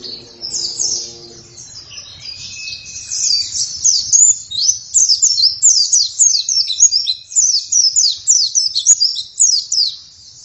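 White-eye (pleci) in full song: a fast, high twittering of quick falling notes, growing louder and busier from about four seconds in.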